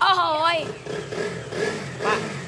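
A voice exclaims "wow" at the start, over a KTM Duke motorcycle engine running steadily underneath.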